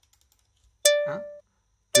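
Two plucked notes of a backing-track count-in rhythm, about a second apart, each struck sharply and fading over half a second.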